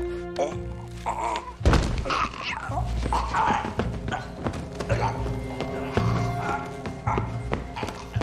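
Dramatic film score with low held notes, over repeated thuds and a man's wordless pained vocal sounds as he drags himself across a tiled floor.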